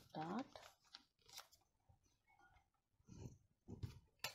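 Faint rustles and small clicks of a sheet of pattern paper being handled and pressed flat by hand, after a brief voice sound at the very start.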